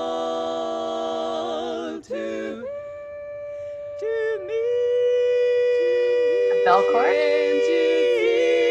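Women's barbershop quartet singing a cappella: a held four-part chord breaks off about two seconds in, then one voice holds a long note while the other parts come back in beneath it. The quartet builds to a loud, full sustained chord, with an ornamental rising run near the end.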